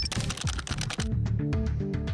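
Electronic news-intro theme music with a steady kick-drum beat, overlaid with a fast run of dry clicks like typing in about the first second.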